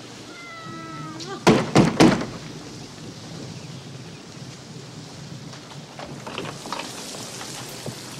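A house cat meows once, a call about a second long, then three loud knocks on a front door in quick succession, over a steady hiss of rain.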